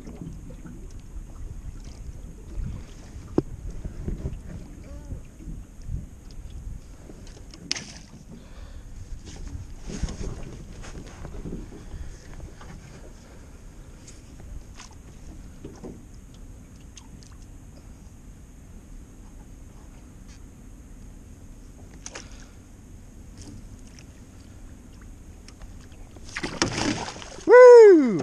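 Water lapping and scattered small knocks against an aluminium jon boat as a jugline is hauled in by hand, over a low rumble. Near the end a loud burst of splashing as a flathead catfish is brought up to the landing net.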